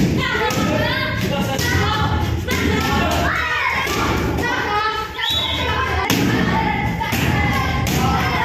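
Repeated thuds of taekwondo kicks striking hand-held kick pads, with a voice sounding almost throughout, over them.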